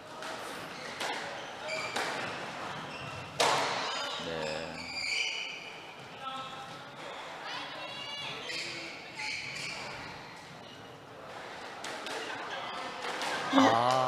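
Squash ball struck by rackets and smacking off the court walls, with sharp impacts, the loudest about three and a half seconds in. Shoes squeak on the hardwood floor, and the whole court echoes.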